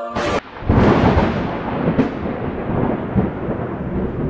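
A short burst of noise, then thunder comes in under a second later and rolls on as a long rumble, slowly fading.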